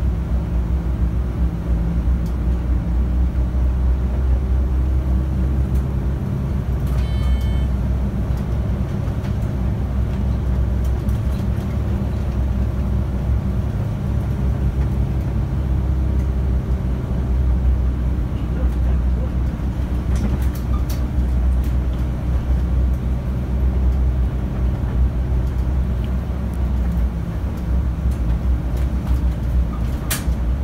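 Volvo city bus heard from inside the cabin near the front, its engine and drivetrain running with a steady low drone as it drives along. A short electronic beep sounds about seven seconds in.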